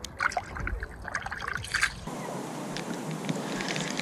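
Small splashes and drips of shallow lake water around a hand, irregular and short. About halfway through they give way to a steady, even hiss.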